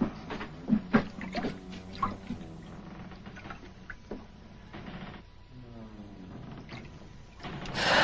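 Footsteps on wooden ship stairs and deck boards: a series of irregular knocks over a faint low hum.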